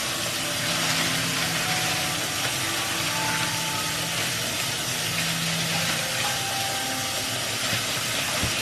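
Kitchen faucet running steadily into a stainless-steel sink.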